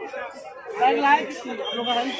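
People talking: background chatter of voices with no clear words.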